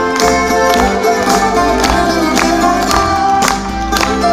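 Live instrumental break of a Greek-style pop song: a bouzouki plucking the melody over keyboard, with a steady beat.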